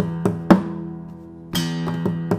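Takamine acoustic guitar played as a percussive rhythm: a ringing chord struck with a palm thump and fingernail attack, followed by quick finger taps and a sharp slap on the guitar's side, the loudest hit about half a second in. The thump-and-chord comes again about one and a half seconds in, followed by more taps as the loop repeats.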